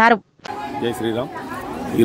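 Speech only: a voice finishes a phrase, there is a brief cut to silence, then a background chatter of several people with faint, indistinct voices.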